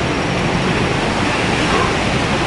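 Steady rushing background noise with no distinct knocks or voices, even and unchanging throughout.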